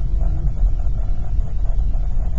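Steady low road and engine rumble inside the cabin of a moving car, driving over a bumpy, reinforced stretch of highway.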